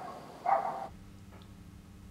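A dog barks once, about half a second in, followed by a faint steady hum.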